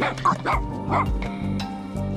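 Small terrier giving a few short, high yips in quick succession in the first second, over background music.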